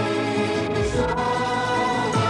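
Background music: a choir singing long held notes, the chord changing about a second in.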